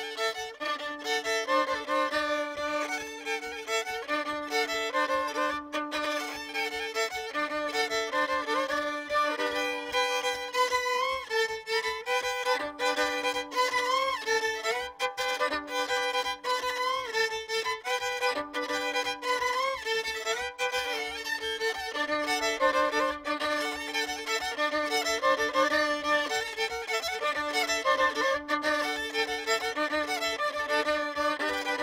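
Solo violin playing a Polissian folk-fiddle polka: a quick, busy melody over a held low drone note that breaks off briefly now and then.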